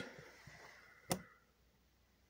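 Near silence broken by a single short, sharp click about a second in.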